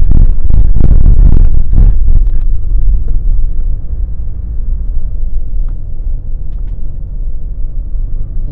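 Car tyres rumbling and knocking over a railway level crossing for the first two seconds or so, then the steady, quieter rumble of the car running along the road, heard from inside the cabin.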